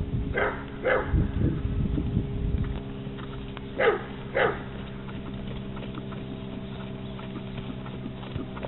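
A dog barking: two short barks in quick succession about half a second in, then two more about four seconds in, each falling in pitch. Low dull thuds come in the first couple of seconds.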